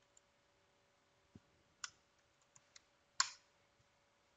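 A few sparse clicks from a computer mouse and keyboard as a search is typed in, the loudest about three seconds in, over a faint steady hum.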